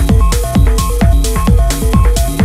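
Techno DJ mix: a steady four-on-the-floor kick drum at about two beats a second, with hi-hats between the kicks and a short repeating synth figure.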